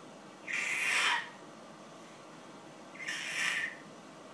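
A baby making two short, breathy squeals into a plastic bowl held at his mouth, each lasting under a second, the second one about three seconds in.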